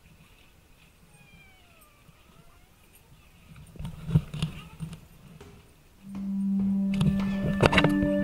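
Background music comes in suddenly about six seconds in, opening on a long held low note, with a second higher note and sharp percussive beats after it. Before the music there are a few seconds of quiet with a cluster of knocks about four seconds in.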